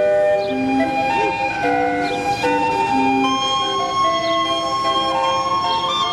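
Steam calliope of the sternwheeler Natchez playing a tune: a run of held whistle notes, often several sounding together, some wavering slightly in pitch.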